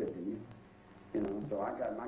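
A man's voice speaking in a small room, trailing off, then resuming after a pause of about half a second.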